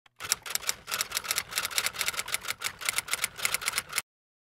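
Typewriter keystroke sound effect: a rapid, steady run of key clacks, about eight a second, that cuts off suddenly at the end.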